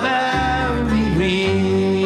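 Recorded traditional Irish folk song: a singer holding long, wavering notes over instrumental accompaniment with a steady bass.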